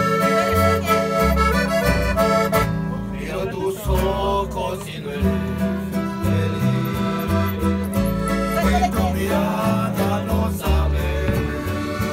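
Live accordion and guitar music played close by: the accordion holds chords and melody over a bass line that steps between low notes.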